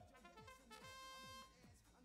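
A faint, steady electronic buzzer tone lasting a little over half a second, sounding about a second in as a robotics match's autonomous period starts.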